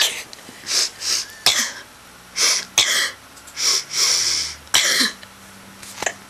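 Young girls coughing and sniffling in a run of about ten short, unevenly spaced bursts, a mock song coughed out on purpose.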